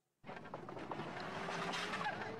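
Outdoor background noise with wind on the microphone from the reacted-to phone clip. It starts abruptly about a quarter second in after a silent gap and slowly grows louder.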